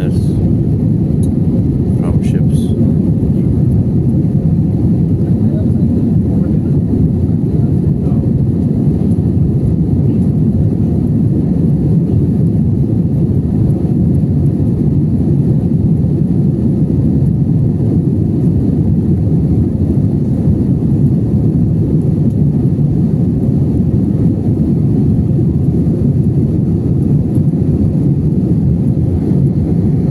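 Cabin noise inside a jet airliner in flight: the engines and the airflow over the fuselage make a steady low drone that doesn't change.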